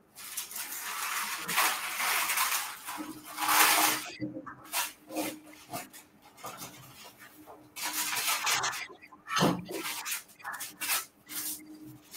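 Sheet of parchment paper rustling and crinkling as it is handled and laid over rolled-out cookie dough. A dense rustle fills the first few seconds, then short scattered rustles and light knocks as hands smooth the sheet down.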